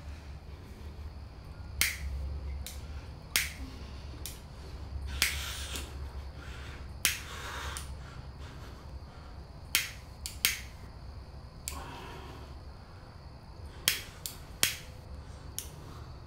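A disposable flint-wheel lighter struck again and again, about fourteen sharp clicks at uneven intervals, some trailing a short hiss, without lighting the cigarette. A steady low hum runs beneath.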